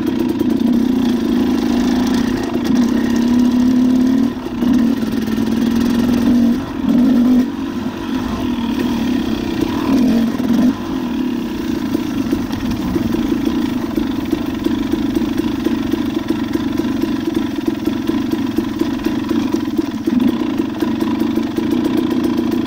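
Off-road motorcycle engine running at low revs while riding a downhill singletrack. Its pitch rises and falls in steps over the first ten seconds or so, then holds steady.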